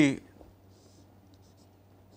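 Faint strokes of a marker pen on a whiteboard as a line is drawn: a few short, high scratchy squeaks and small ticks.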